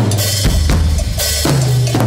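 Live percussion ensemble drumming: a row of toms and a drum kit with bass drum and snare, over a low bass line that steps in pitch. Heavy accents fall about every half second.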